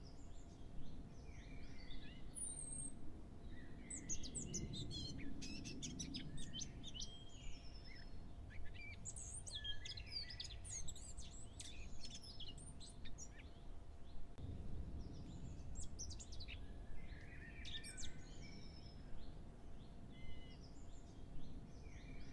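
Small birds chirping, many short high calls coming in clusters, with a faint steady hum beneath. A soft low rumble swells twice, a few seconds in and again past the middle.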